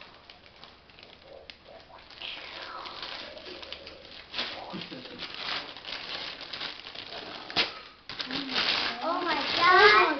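Christmas wrapping paper being torn and crinkled off a gift box, starting about two seconds in. Near the end, excited voices rise over it.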